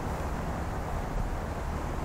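Steady low background rumble with a faint hiss and no distinct events.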